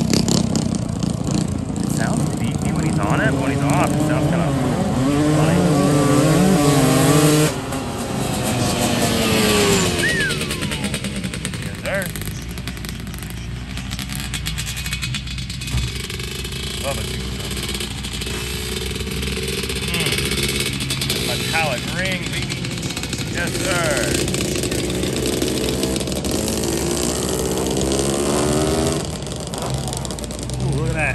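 A racing vehicle's engine revving hard down a dirt track, its pitch climbing and shifting, then dropping off suddenly about seven seconds in. Engine revving rises again in the second half.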